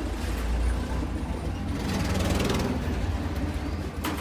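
Steady low rumble of passing road traffic, with a louder hiss swelling about two seconds in and fading by about two and a half seconds.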